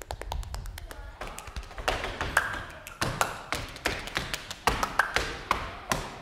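Body percussion: a run of quick, irregular taps and clicks with a few louder strikes among them, made by performers moving, stepping and striking their bodies.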